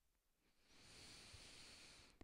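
Near silence, then from about half a second in a faint, steady airy breath close to a headset microphone.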